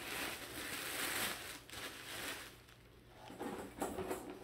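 Paper gift wrapping rustling and crinkling as a package is handled and unwrapped, dying away after about two and a half seconds.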